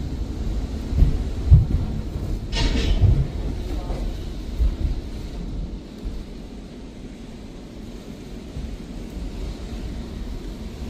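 Hurricane-force wind buffeting the house and the microphone: a heavy low rumble that swells in gusts, with one brief sharper rush about three seconds in. The wind is quieter from about six seconds on.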